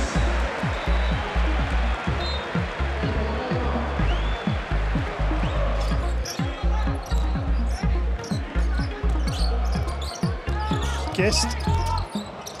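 Basketball arena game sound: a loud crowd with a steady run of short low thumps, about three a second.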